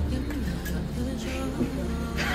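Quiet, low talk among people at a meal table over a steady low hum.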